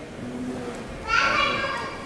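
A high-pitched voice shouts once, about a second in, for just under a second, over a low background of room noise.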